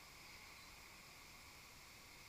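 Near silence with a faint steady hiss.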